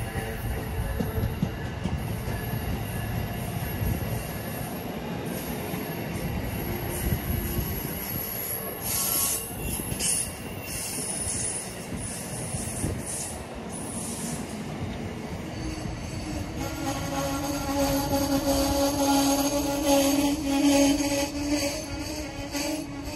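Amtrak passenger coaches rolling past on the rails with a steady rumble and wheel squeal. From about two-thirds of the way in, a steady pitched whine rises over the rolling noise and grows louder toward the end.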